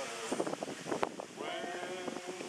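Several voices singing, with a wavering held note that comes in about a second and a half in. A few sharp clicks come before it.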